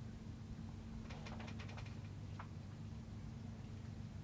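Hushed outdoor ambience around a golf green, with a faint steady low hum and a few soft ticks. A single light click about two and a half seconds in is the putter striking the ball.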